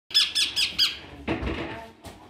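Lutino ringneck parakeets calling: four sharp, high squawks in quick succession, about four a second, dipping and rising in pitch. A quieter, lower sound follows in the second half.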